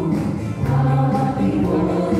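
A mixed group of young women and men singing a Telugu Christian song in unison into microphones, held notes blending with sustained accompaniment.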